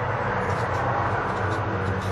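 A steady rushing noise over a low hum, swelling slightly in the middle.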